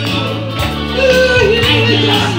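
A group singing into microphones with a wavering, held melody over live electronic keyboard accompaniment with sustained bass notes.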